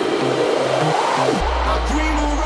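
Afro house DJ mix over a PA: a rising noise sweep builds over the beat, then a deep bass line drops in about a second and a half in.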